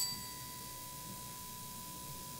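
A short, bright metallic ding like a small bell, ringing out and fading within the first half second. Under it is faint room noise and a steady thin high tone.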